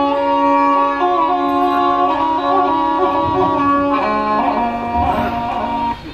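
Sarangi playing a stepping melody in a Punjabi dhadi music interlude, with the dhadd hourglass drum in accompaniment; the music cuts off suddenly at the end.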